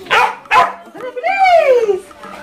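An excited askal (Filipino mixed-breed dog) barking twice in quick succession, then letting out one long yowl that falls in pitch, the noise of a restless dog worked up and going wild indoors.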